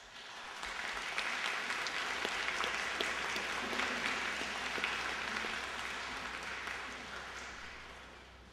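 Audience applauding, swelling up in the first second and dying away over the last couple of seconds.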